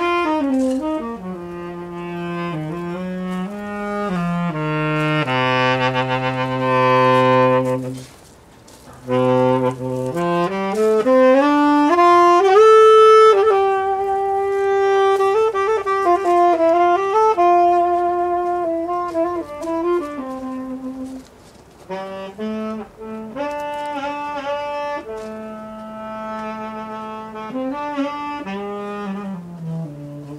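Solo saxophone improvising a melody in long held notes and connected phrases. It holds a low note for a few seconds, pauses briefly about a quarter of the way in, then climbs in a rising run to sustained higher notes. It pauses again about two-thirds of the way through before the phrases resume.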